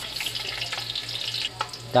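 Garlic and onion sizzling as they sauté in oil in an aluminium pot, with a steady hiss and a few light clicks, over a steady low hum.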